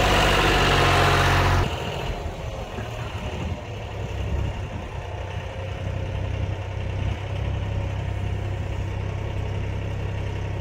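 Case IH 395 tractor's diesel engine running steadily, loud and close at first, then suddenly quieter about two seconds in as the tractor pulls away.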